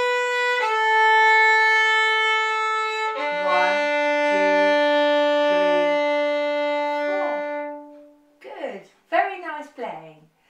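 Violin played with long, smooth bow strokes: a held note that steps down slightly about half a second in, then a lower note sustained for about four seconds before it fades out near the end.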